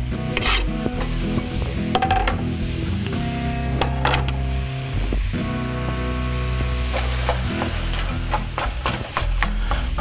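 Ground beef, onions and mushrooms sizzling in a nonstick skillet while a wooden spatula stirs them, with repeated clicks and scrapes of the spatula against the pan.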